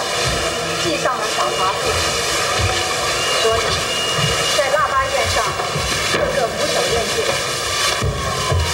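Mandarin dialogue spoken over a steady droning background made of many held tones.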